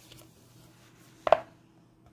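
A single short tap a little past the middle, over a faint steady hum.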